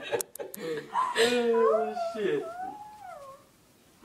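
A person crying in a wavering, wailing voice for about two seconds, after a few short clicks at the start.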